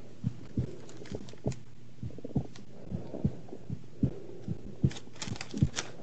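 A man's heartbeat, picked up by a body-worn microphone pressed between his chest and the bed as he lies face down: low, muffled thumps a little over one a second, with faint rustling clicks.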